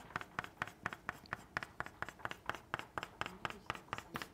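Soft pastel stick scratching across paper in quick, even back-and-forth strokes, about five or six a second.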